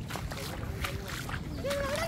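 Feet and legs wading through shallow water, with light sloshing and splashing, over a steady low wind rumble on the microphone.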